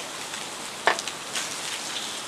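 Mackerel on skewers sizzling over a charcoal grill, a steady crackling patter of fat and hot coals. A few sharp clicks sound over it, the loudest about a second in, as the fish is moved with metal tongs.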